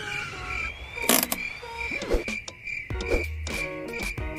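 Short electronic intro jingle: a high beep pulsing evenly, with short tones, rising glides and a sharp hit about a second in.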